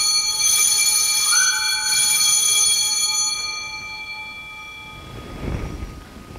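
Altar bells rung at the elevation of the consecrated host: a chord of several high ringing tones that fades away over about four seconds.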